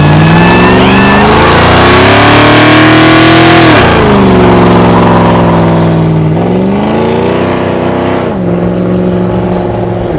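Dodge Charger V8 doing a burnout: the engine revs climb for about four seconds over the hiss of spinning tyres, then the revs drop and hold high, dipping again about six and eight seconds in.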